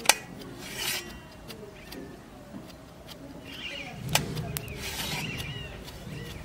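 A small kitchen knife slicing through button mushrooms and knocking and scraping against a steel plate: a sharp click right at the start, a short scrape about a second in, and another knock about four seconds in.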